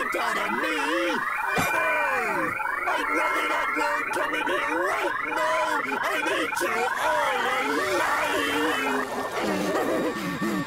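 Several cartoon character voices at once making wordless, wavering cries and groans, their pitch sliding up and down without a break.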